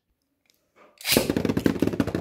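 About a second of near silence, then Beyblade Burst spinning tops launched into a plastic stadium start up abruptly, spinning and rattling quickly against the bowl floor.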